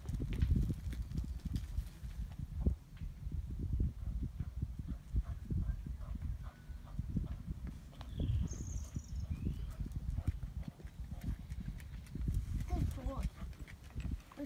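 Low, steady rumbling and crackling of wind buffeting the phone's microphone outdoors.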